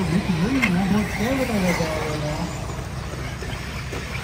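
A person's voice, drawn out and swooping up and down in pitch, for the first couple of seconds, then dropping away. What remains is a steady background hiss.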